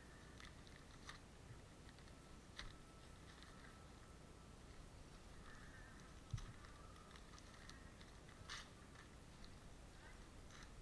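Near silence: faint, scattered crinkling and clicking of newspaper rubbed over a skinned muskrat hide to flesh it, with a soft thump about six seconds in and a sharper click near the end.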